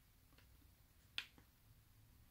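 Near silence broken by one sharp click a little over a second in, with a couple of fainter ticks around it: a button being pressed on a handheld remote control.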